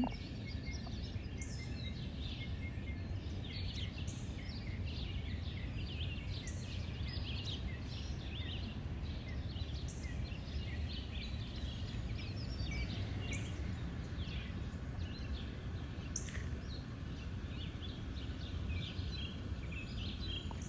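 Many short bird chirps and calls in quick succession, over a steady low rumble of background noise.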